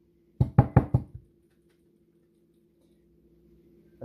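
Glass pint canning jar packed with raw pork pieces knocked down on the counter about six times in quick succession, roughly seven knocks a second, to settle the loosely packed meat and work the air out in place of a bubble tool.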